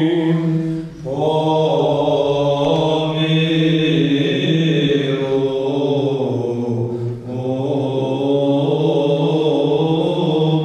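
Male choir singing Byzantine church chant: a moving melody line over a steadily held low drone (the ison). The melody voices break off briefly for breath about a second in and again around seven seconds, while the drone carries on.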